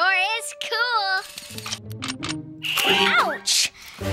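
Cartoon soundtrack: a character's voice wavering in pitch for about a second, then background music with a whooshing sound effect and a sliding-pitch effect about three seconds in, as the bubble slips away.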